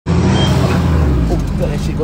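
A truck's engine running with a steady low rumble as it drives slowly over a rutted dirt track.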